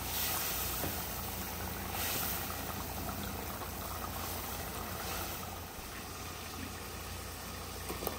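Beef curry simmering in a stainless steel pot as it is stirred with a silicone spatula, over a steady low background hum.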